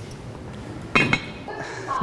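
A quiet stretch, then a sharp clink of metal cookware about a second in.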